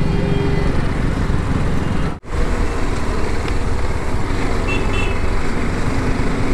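Motorcycle engine running at low speed in city traffic, with road and wind noise, on a rider's on-board microphone; the sound breaks off for a moment about two seconds in.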